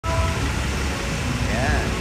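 Continuous low background rumble, with a short rising-and-falling voice sound near the end.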